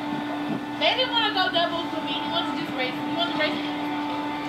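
Muffled voices of people talking in a played-back vlog, over a steady droning machine hum.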